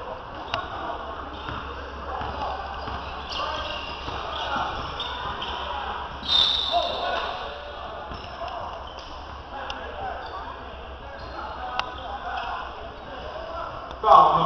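Spectators chatting in a gym, with a few basketball bounces on the hardwood. About six seconds in, a referee's whistle blows once, briefly, calling a foul.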